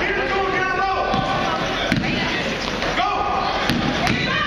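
A basketball bouncing on a gym floor during play, a few sharp thuds, over voices of players and spectators echoing in the gym.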